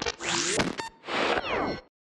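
An edited transition sound effect: a whoosh sweeping up in pitch, then a second whoosh sweeping down, cutting off sharply.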